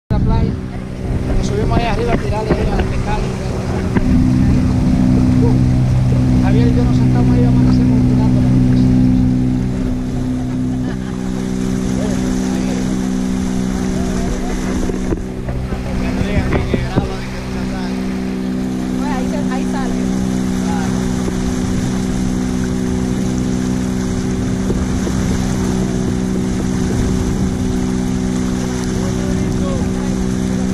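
Motorboat engine running at a steady pitch. It grows louder about four seconds in and eases back by about ten seconds.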